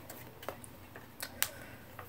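Fingers handling a small estrogen patch pouch, making a few light clicks, the loudest about a second and a half in.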